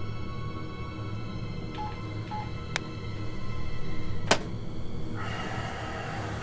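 Dark, tense film score with held tones over a low drone. Two short beeps come about two seconds in, a light click follows, and a sharp knock a little past four seconds in is the loudest moment, before a hissing swell near the end.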